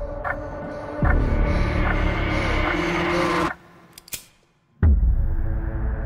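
Horror trailer score: a low, droning swell with layered sustained tones that grows louder about a second in, then cuts off abruptly. A sharp click sounds in the sudden quiet, then a heavy low boom hits near the end and the drone resumes.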